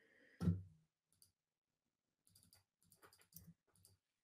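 A short low thump about half a second in, then faint, irregular clicking at a computer keyboard and mouse, in small clusters over the second half.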